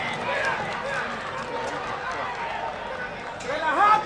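Several men's voices shouting over stadium sound, with one loud voice rising into a shout near the end as a goal is scored.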